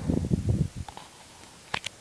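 Handling noise as the camera is swung around: a loud low rumbling rustle for about half a second, then two short sharp clicks near the end.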